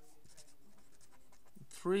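A felt-tip marker writing on paper, making quiet scratching strokes as letters are written. A man starts speaking near the end.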